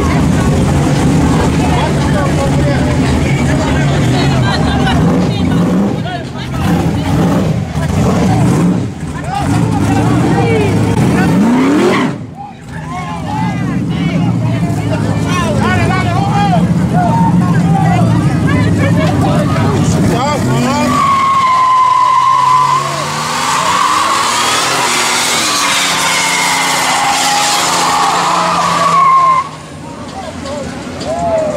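1980s Buick Regal's engine revving hard, rising and falling in pitch. About two-thirds of the way in the rear tyres break loose into a burnout: a long, wavering tyre squeal that lasts until just before the end.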